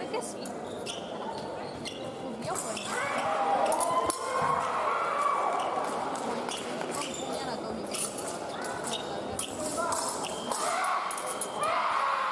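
Épée fencers' footwork on the piste, with sharp stamps and knocks and the clicks of blades touching, echoing in a large hall.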